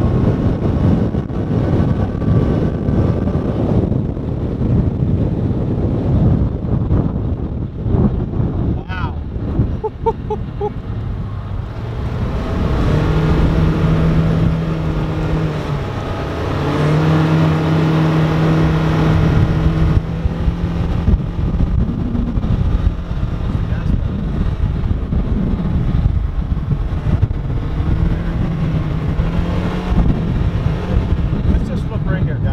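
Polaris Ranger XP 1000 side-by-side's twin-cylinder engine running under load while driving over snow, with a dense rumble and rattle from the ride. About halfway through, the engine holds a steady droning pitch for several seconds.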